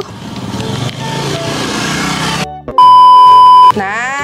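A motor scooter passing close by, its engine noise building over the first two and a half seconds. Then a loud electronic beep at one steady pitch, lasting about a second.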